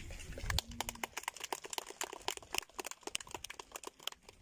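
Scattered hand clapping from a small outdoor audience: irregular, separate claps, several a second, from a few people.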